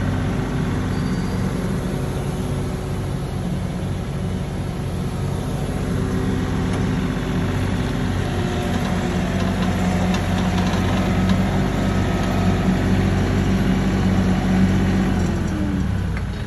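Heavy diesel engines running steadily with a low drone that grows louder in the second half, as a stuck compact tractor is towed free by chain under load.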